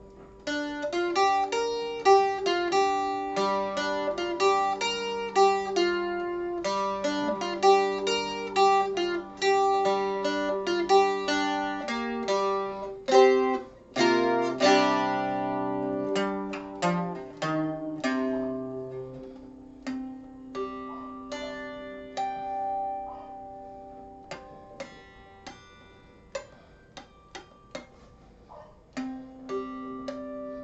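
Handmade mandola, tuned C-G-D-A with the low string dropped to G, played by plucking: a quick run of picked notes over ringing low strings, a few struck chords about halfway through, then slower, sparser single notes that ring out.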